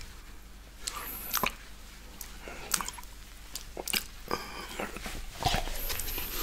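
Close-miked wet mouth sounds of fingers being licked clean of milkshake: scattered tongue clicks and lip smacks at irregular intervals.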